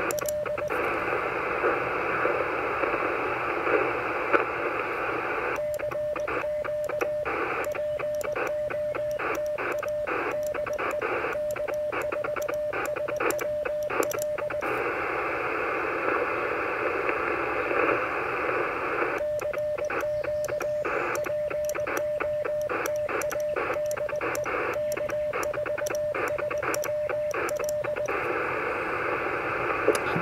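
Mission RGO One HF transceiver's speaker giving steady band-noise hiss, with two long runs of Morse code keyed on a paddle as a pitched beep of about 600 Hz. The noise chops in and out with the keying. Between the runs only the hiss is heard: no station answers the call.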